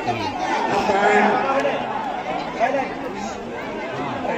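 Crowd chatter: many voices talking over one another, with no single clear speaker.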